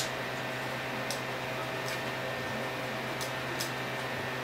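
Steady hum and hiss from a running Tektronix 545A vacuum-tube oscilloscope, with about five faint clicks as the time-base selector knob is switched.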